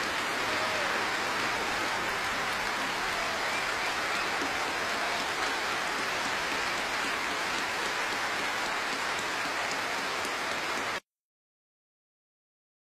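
A very large concert audience applauding, a steady, even clatter of many hands clapping. It cuts off abruptly near the end.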